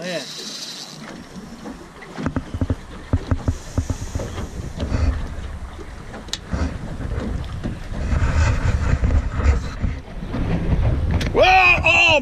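Wind noise on the microphone and water against a boat hull, with scattered sharp clicks and knocks, while an angler fights a fish on a spinning rod. Near the end the fishing line snaps and a loud shout of dismay follows.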